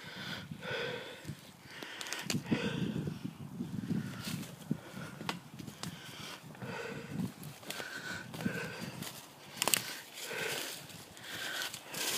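A person breathing heavily through the nose and mouth while walking, about one breath a second, with footsteps and small clicks from twigs and debris on the forest floor.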